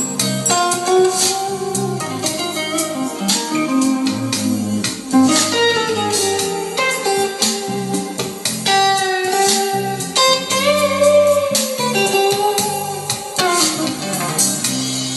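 Guitar-led music played back through a Patterson Audio Systems bookshelf speaker with a Vifa tweeter and a woven-cone woofer, heard in the room. Notes bend and slide continuously over a bass line.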